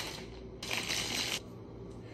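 Clear plastic bag crinkling and rustling as it is handled, with a louder burst lasting under a second from about half a second in.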